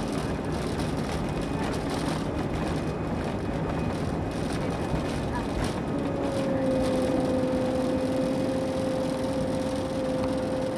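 Airbus A319 jet engines at takeoff power, heard inside the cabin from a seat over the wing, through the takeoff roll and liftoff. A steady hum comes in about six seconds in.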